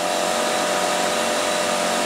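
Machinery in a food-processing pilot plant running: a steady, loud whirring noise with a constant mid-pitched tone, like a large fan or blower.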